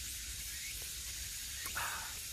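A man taking a quiet sip of coffee from a stainless steel travel mug, barely heard over a steady outdoor hiss, with a short soft sound near the end.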